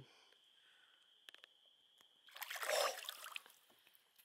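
Brief water splash about two seconds in as a released walleye kicks free of the hand and swims off, after a near-silent start.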